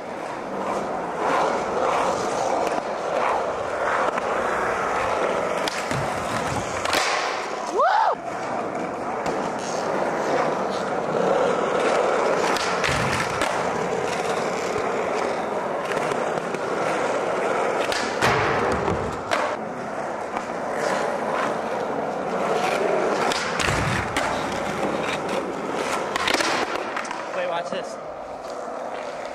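Skateboard wheels rolling steadily on a smooth floor, broken by several sharp clacks and thuds of the board popping and landing during a line of tricks. There is a short rising squeal near 8 s.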